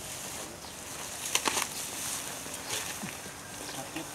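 Dry rice straw rustling and crackling as people step and crouch in it, with a brief cluster of louder crackles about a second and a half in.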